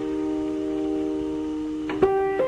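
Piano music: one held chord rings on and slowly fades, and the next notes are struck right at the end.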